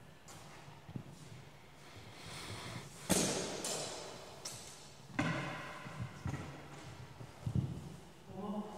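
Steel longswords clashing in a reverberant hall. A sharp strike comes about three seconds in and another about five seconds in, the second leaving the blades ringing, with lighter hits later. Thuds of footsteps on the floor run underneath.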